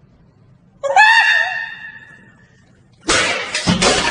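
A person's high-pitched scream about a second in, fading over about a second, followed near the end by a loud, harsh, noisy burst.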